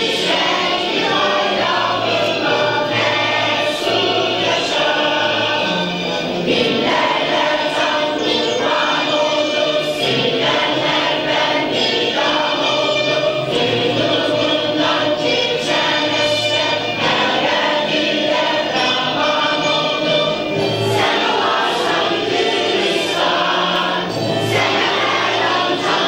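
A choir singing with instrumental accompaniment.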